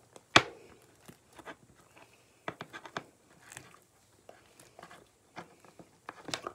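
Sticky homemade slime being handled and pulled by hand, giving scattered small clicks and tacky pops, with one sharp click about half a second in.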